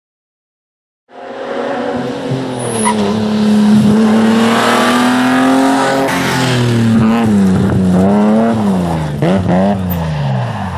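Rally car engine running hard, starting about a second in. Its pitch holds fairly steady at first, then from about seven seconds in rises and falls quickly several times.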